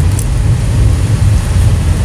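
Loud, steady low rumble of a car's cabin: the car's road and engine noise.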